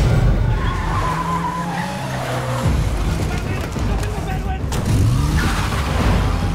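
Cars driving fast with tyres skidding, a dense, loud rumble of engines and tyre noise, and an engine note rising about five seconds in.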